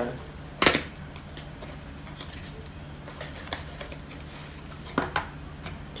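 A small cardboard product box being handled and opened on a table: a sharp click about a second in, a few light taps, then two clicks near the end, over a low steady hum.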